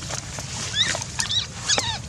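Baby macaque giving short, high-pitched squealing cries, three in quick succession in the second half, pitch bending up and down.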